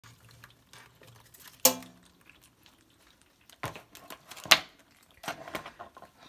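Hard shell-and-metal knocks and scrapes as live blue crabs are handled with kitchen scissors in a stainless steel sink. One sharp ringing knock comes about one and a half seconds in, then two more knocks about four and four and a half seconds in, and a cluster of light clicks near the end.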